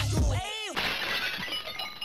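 An outro hip-hop beat with a heavy bass line stops about half a second in. A brief sweeping sound follows, then a glass-shattering sound effect with a ringing, tinkling tail.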